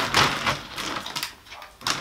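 Rustling of plastic shopping bags and food packaging as a pack is pulled out. It is loudest in the first half second and then quieter, with a couple of light clicks near the end.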